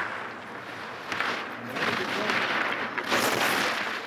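Ski edges carving hard-packed snow through giant slalom turns: a hiss that swells and fades with each turn, loudest about a second in and again about three seconds in.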